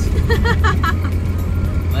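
Steady low drone of a car's cabin on the move, with a short burst of laughter in the first second.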